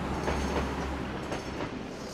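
Tram running along street rails: a steady low rumble with several clicks from the wheels over the track.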